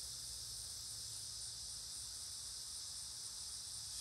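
Steady, high-pitched chorus of insects that runs on without a break, with a faint low rumble underneath.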